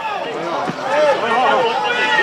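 Several people's voices talking and calling out over one another, with no single clear speaker.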